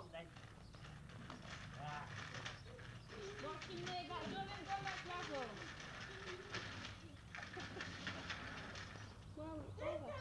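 A baby walker's small wheels rattling and clicking over paving slabs as it rolls, with indistinct voices in the middle and a steady low hum from the old video recording.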